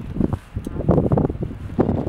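Gusts of wind buffeting the microphone in uneven surges, with the paper wrapping under the fish rustling as it is blown up.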